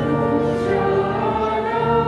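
A congregation singing a hymn together, many voices holding long notes.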